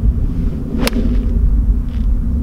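A golf iron strikes the ball once, a single crisp click about a second in: a clean, well-struck impact. Low wind rumble on the microphone runs underneath.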